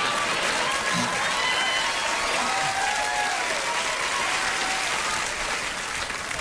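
Studio audience applauding, a steady wash of clapping with voices in the crowd over it, easing slightly near the end.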